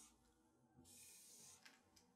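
Felt-tip marker drawn across paper in one long stroke about a second in, a faint scratchy hiss, followed by a light tap as the tip lifts.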